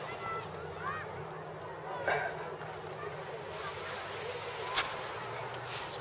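Quiet outdoor ambience with faint bird calls: a few short rising-and-falling calls about a second in, and two soft knocks, about two and five seconds in.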